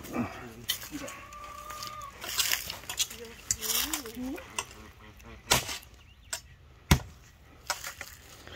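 A handful of sharp knocks and thuds, the loudest about seven seconds in, as a snake is struck on the ground while it is being killed. A short, steady call from poultry sounds about a second in.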